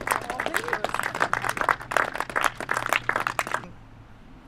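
Audience applauding, a dense patter of many hands clapping that stops abruptly near the end.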